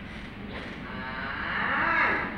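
A person's long drawn-out vocal call, held on one sound and growing louder toward the end.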